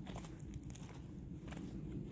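Faint scattered crunching and rustling over a low steady rumble.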